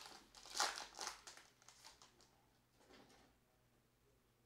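A 2020 Bowman Mega Box trading-card pack wrapper being torn open and crinkled by hand, with a few sharp rustles in the first second or two that taper off into faint handling of the cards.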